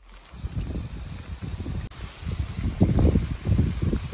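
Wind buffeting the microphone: an irregular low rumble that grows louder about halfway through.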